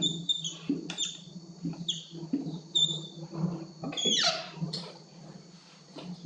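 Dry-erase marker squeaking on a whiteboard in several short strokes as lines are drawn.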